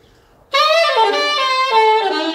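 Saxophone played through a JodyJazz mouthpiece. It comes in suddenly about half a second in and plays a jazz phrase of quick, changing notes.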